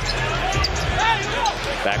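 A basketball being dribbled on a hardwood court over a steady low arena rumble.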